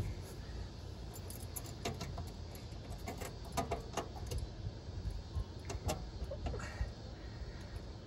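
Keys jangling and a scattering of small sharp metallic clicks as a key is worked in the stiff, locked glove-box lock of a 1964 Chevy Impala.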